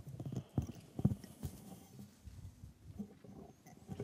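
Irregular low knocks and thumps with soft rustling, loudest about a second in: handling noise on a stand microphone as it is moved and set in place.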